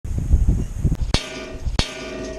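Two sharp shot-like bangs about two-thirds of a second apart, each leaving a metallic ring behind it, after a low rumble in the first second. These are bullet-impact sound effects for an intro animation.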